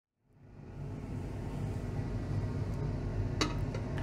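Steady low machine hum fading in from silence over the first second, with one short click about three and a half seconds in.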